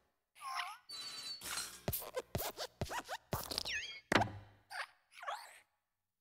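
Sound effects from the Pixar logo's Luxo Jr. desk lamp as it hops onto the letter I and squashes it flat. There are springy squeaks and creaks from the lamp's joints and a series of thumps as its base lands, the heaviest about four seconds in.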